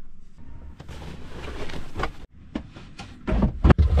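Handling noises and a series of knocks as a plastic battery box is set down into a fibreglass locker, with the loudest thuds near the end.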